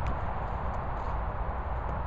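Steady outdoor background noise with a heavy low rumble and a few faint light clicks.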